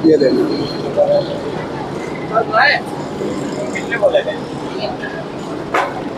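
Street background: a steady hum of traffic with voices and a few bird calls.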